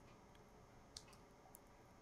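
Near silence: room tone with two faint clicks, one about a second in and another about half a second later.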